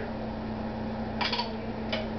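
Steady low electrical hum, with a short scraping rustle about a second in and a light click near the end as a utensil works in a small jar of topping.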